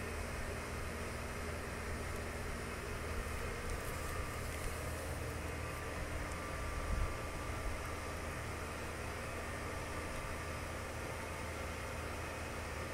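Steady mechanical hum and hiss, with a few faint soft knocks between about three and seven seconds in.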